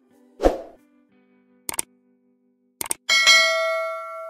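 Sound effects of a subscribe-button animation: a short hit about half a second in, two quick double clicks, then a bright bell-like ding near the end that rings on and fades slowly.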